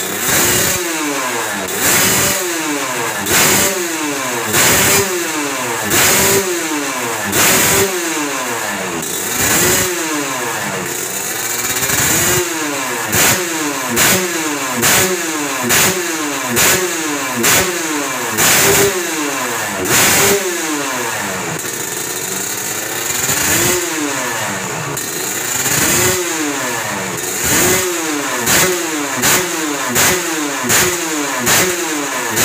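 Two-stroke Kawasaki Ninja 150 (Ninja 'kebo') engine in a grasstrack bike, running and revved in repeated throttle blips, each a quick rise and fall in pitch about every one and a half seconds. The blips come faster around the middle and near the end. The engine is being set up and tuned.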